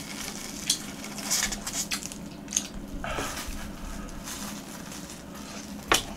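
Crisp fried breadcrumb crust of a twisted-dough hot dog crackling as it is pulled apart by hand, with scattered small crunches and a brief rustle about three seconds in.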